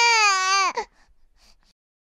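A newborn baby's cry: one long, slightly wavering wail that breaks off under a second in, followed by a few faint small sounds.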